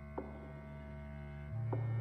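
Orchestra holding a sustained low note that swells louder about one and a half seconds in, with two short, sharp accents that ring briefly over it.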